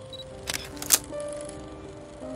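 Background music with held tones, overlaid with glitch transition effects: two sharp static crackles, about half a second and about a second in, the second the loudest.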